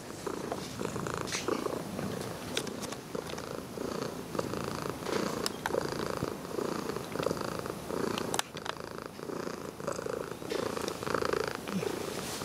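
A domestic cat purring close up while being stroked, the purr swelling and easing in a steady rhythm with each breath. A few sharp clicks cut through it, the sharpest about eight seconds in.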